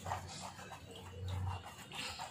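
A hand rubbing and pressing wet pulp against a fine mesh strainer: soft, repeated wet rubbing strokes.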